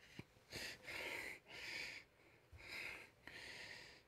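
Faint breathing close to a headset microphone: about five soft breaths or sniffs in a row.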